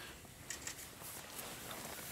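A few faint, light taps of a finger on a small shaker jar of glitter, shaking it out a little at a time, over quiet room sound.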